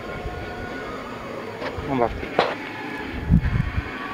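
1961 Ford Ranchero's 170 straight-six engine running steadily, a low rumble with a thin, steady high whine over it. The engine is running hot, with cooling problems the owner calls bad.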